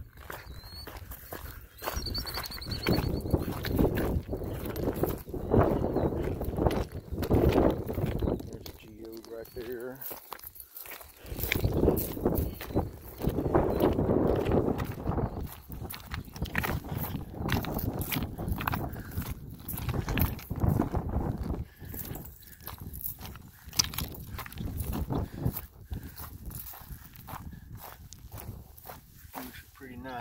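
Footsteps crunching and scuffing over loose stones and gravel on a dry rocky lakeshore, an uneven run of short crunches with low rumbling swells between them.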